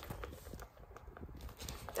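Light handling noise from a zippered handbag being held open: a few faint, scattered clicks and rustles.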